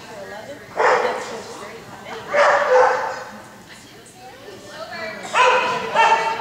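A dog barking three times, about a second, two and a half seconds and five and a half seconds in, over background chatter.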